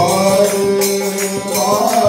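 Devotional bhajan chanting: a man's voice singing held, gliding notes over harmonium accompaniment, with jingling hand percussion keeping a steady beat.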